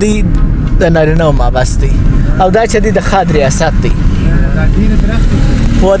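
A voice talking in short phrases over the steady low rumble of a vehicle driving along a road.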